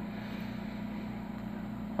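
Steady low background hum, like a ventilation or appliance drone in a small room, with no other events.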